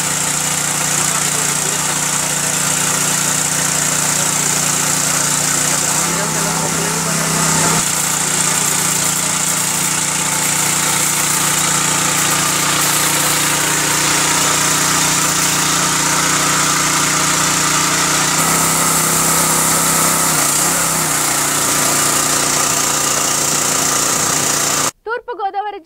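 Engine of a motorized crop sprayer running steadily as it blows a dense white spray mist. Its note drops a little for a couple of seconds twice, about six seconds in and again near eighteen seconds.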